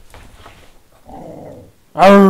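A dog growling softly, one short low growl about a second in.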